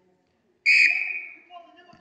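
A referee's whistle gives one short, loud blast about half a second in, signalling the kick-off restart from the centre of a futsal court.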